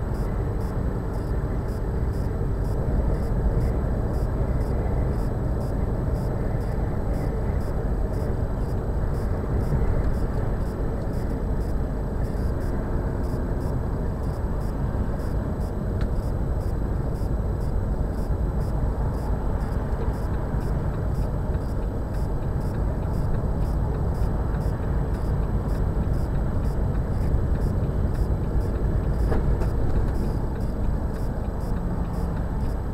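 Steady engine and tyre noise heard inside a lorry cab cruising at motorway speed.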